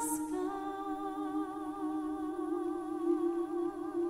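Mixed choir singing a slow, held chord, with a higher wavering voice line above it; the voices step to new notes just after the start.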